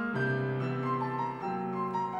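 Grand piano playing a solo passage in a classical piece for violin and piano. A deep bass note is held under a slowly descending line of notes, changing about one and a half seconds in.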